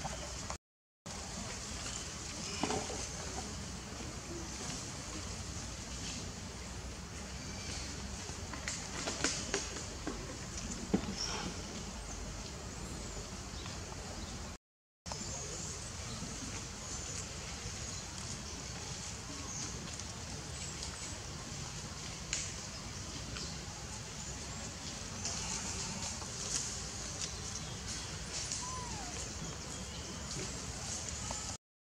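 Steady outdoor ambience with a low rumble, scattered faint clicks and a few short faint animal calls. The sound drops out completely twice, briefly.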